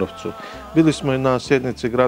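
A man speaking; at the start a thin, steady buzzing tone lasts about half a second before his words resume.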